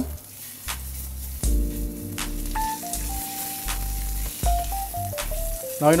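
Salmon fillets sizzling in a very hot nonstick frying pan as they are turned over with a slotted spatula, with a few short clicks. Background music with held chords and a simple melody plays over it.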